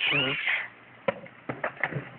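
A baby's short squeal, rising then falling over about half a second, followed by a few light clicks and knocks.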